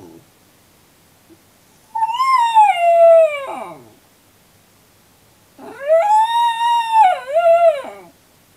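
A Miniature Schnauzer left alone in its crate howling twice: a long howl that slides downward, then after a short pause a second, longer howl that rises, holds and dips before ending lower. A short cry comes right at the start.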